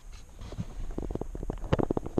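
A quick run of plastic clicks and rattles, about ten a second, building to the loudest near the end, from hands working the plastic cabin-filter housing behind a Ford Fiesta MK7's glovebox.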